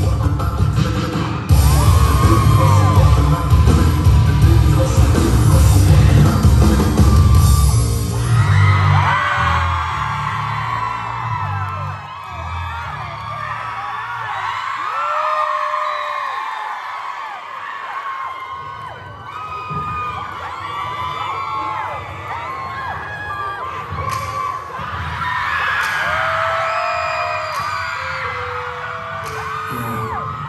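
Live pop dance track with heavy bass played over a concert hall's speakers, which drops away about nine seconds in. Then a crowd of fans keeps screaming and cheering, with many short high yells.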